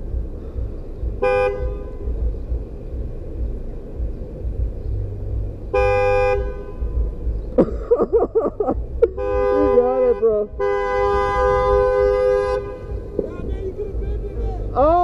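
Car horn honking repeatedly: a short toot, then a honk of about a second, then a long honk of about three seconds. It is a driver signalling a rider waiting at a red light to move on.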